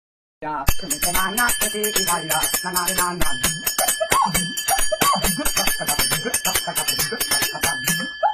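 A bell rung rapidly, several sharp strikes a second with a steady ringing tone, with a voice and music over it.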